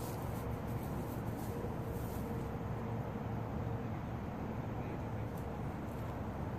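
Steady, low outdoor background noise with no distinct event; a faint steady hum comes in about a second and a half in.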